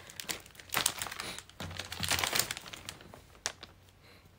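Cellophane wrapping and a thin plastic shopping bag crinkling as they are handled, in several bursts that fade near the end.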